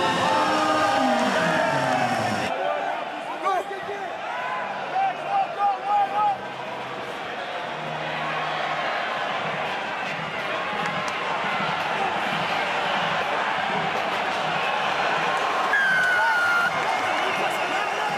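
Steady crowd noise with shouts and voices during a rugby sevens match, with a few sharp loud bursts around five to six seconds in and a brief high call near the end. It opens with a short pitched intro sound that cuts off after about two seconds.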